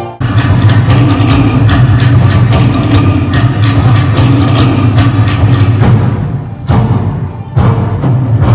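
Tahitian drum ensemble playing a fast, dense rhythm on wooden slit drums over a deep bass drum, accompanying a dance. It starts suddenly just after the opening, and a few loud accented strikes stand out near the end.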